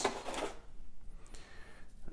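Faint rustling and scraping as plastic side sweeper brushes are handled and pulled out of a molded pulp cardboard tray, with a faint high squeak about a second in.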